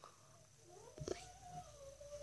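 A faint, drawn-out pitched vocal sound that glides up and then holds one steady note, starting about halfway through, with a soft knock near the middle.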